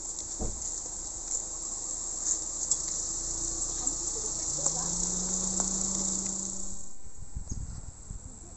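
Steady high-pitched insect chorus that cuts off abruptly about seven seconds in. A low steady hum joins it for a couple of seconds in the middle.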